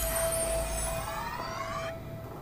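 Magical sound effect for the glowing crane: a siren-like whine of several pitches climbing together over a low rumble, cutting off suddenly just before the end. A steady held music note runs underneath.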